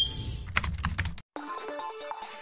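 Logo sting sound effect: a loud electronic burst with high ringing tones, then a quick run of clicks that stops about a second in. After a short gap, soft background music with steady notes begins.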